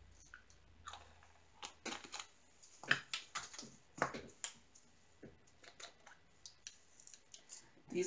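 Irregular small plastic clicks and taps as diamond painting drill containers are handled and set down and the drill pen works on the canvas, the loudest about three and four seconds in.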